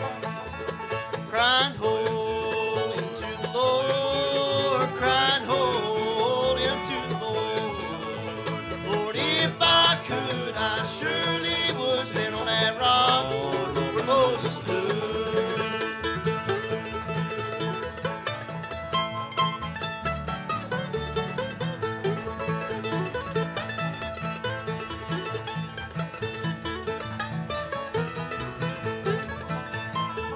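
Bluegrass band playing live: five-string banjo, fiddle, mandolin, acoustic guitar and upright bass.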